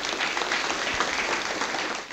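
Audience applauding steadily: many hands clapping at the close of a lecture.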